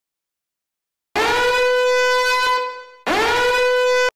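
A horn sound effect: two long blasts on one steady, bright pitch, each sliding up into its note as it starts. The first starts about a second in and fades out after about a second and a half; the second follows straight after and lasts about a second.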